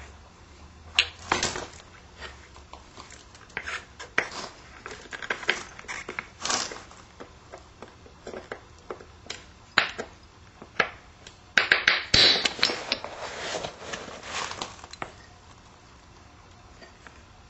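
A flint preform being worked by hand: a scattered series of sharp stone clicks and snaps as small flakes come off, with a longer spell of gritty scraping about twelve seconds in.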